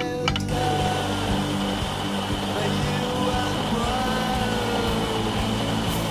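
Espresso machine steam wand hissing steadily as it steams milk, starting about half a second in and cutting off near the end, over background guitar music.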